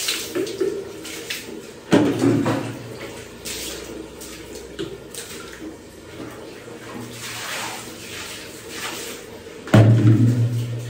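Mugfuls of water thrown against a tiled wall and splashing down. There are several separate splashes, with water scooped from a bucket in between.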